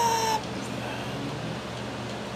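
An animal's high, drawn-out whine that stops about half a second in, then low steady background noise with a faint hum.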